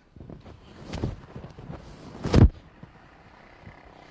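Movement sounds from a xingyiquan splitting-fist technique: shuffling steps and rustling clothing over low outdoor rumble, with one short, louder thump-whoosh a little over two seconds in as the step and strike land.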